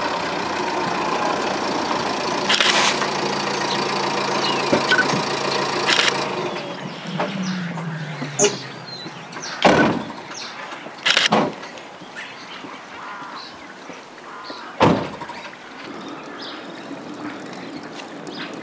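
Small delivery van's engine running steadily, then dropping in pitch and stopping a little under halfway through. Three sharp knocks follow over the next several seconds.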